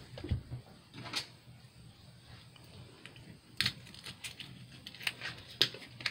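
A few light, scattered clicks and taps from a scrapbook album being handled on a tabletop, the clearest about a second in and about three and a half seconds in.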